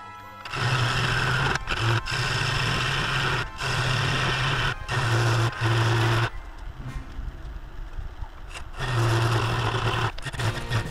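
Bowl gouge cutting the inside of a spinning River Sheoak bowl on a wood lathe, working toward the centre. The cutting noise comes in several passes with brief breaks, eases off about six seconds in, and picks up again near the end.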